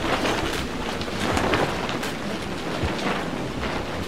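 Storm wind and rain buffeting a shelter's plastic sheeting walls: a steady rush with scattered crackling flaps of the plastic.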